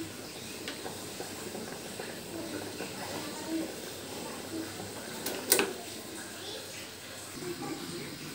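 Pot of beef-bone soto broth simmering with a faint, steady hiss, and a single sharp click about five and a half seconds in.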